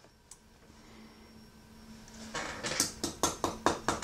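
A quick run of light, sharp clicks, about a dozen in under two seconds starting a little past halfway, from small tools or materials being handled at a fly-tying bench, over a faint steady hum.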